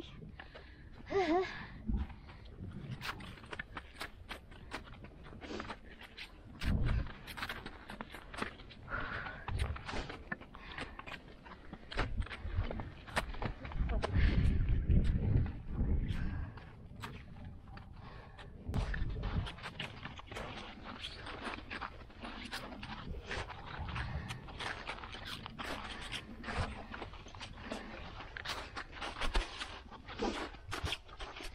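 Crampons crunching and scraping in snow, step after step, an uneven run of crisp crunches. Low rumbling noise on the microphone comes and goes, loudest between about twelve and sixteen seconds in.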